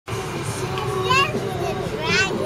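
A young child's short, high-pitched squeal about a second in, over children's chatter and the steady hum of a moving car's cabin.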